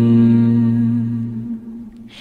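The last held note of a Nghệ Tĩnh folk song: one steady pitch from the singing and accompaniment, fading out about a second and a half in.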